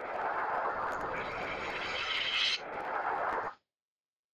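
An audio sample time-stretched in Ableton Live's Texture warp mode: a grainy wash of noise with no clear pitch. A brighter hiss joins it for about a second and a half midway, and the whole sound cuts off suddenly near the end.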